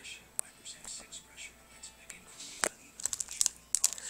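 Plastic blister packaging of a Pokémon Dragon Vault pack crinkling and crackling as it is pried open by hand, with scattered sharp clicks.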